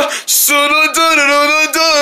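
A voice singing a wordless tune in held, steady notes with short breaks between them. This is dance music sung out loud to make a paper-puppet character dance.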